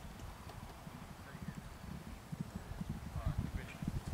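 Hoofbeats of two galloping racehorses on turf, a fast run of dull thuds that grows louder toward the end as the horses come closer.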